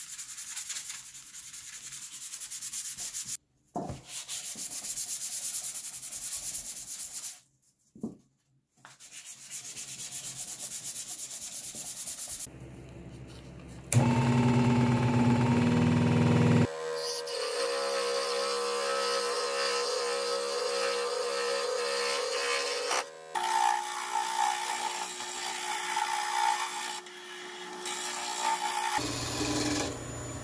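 Sanding sponge rubbing over a primed sheet-metal toy-piano panel by hand, a rough rasping stroke with two short breaks. About halfway through, a wood lathe's electric motor is switched on and runs with a steady hum that shifts to a new pitch twice as its speed dial is turned.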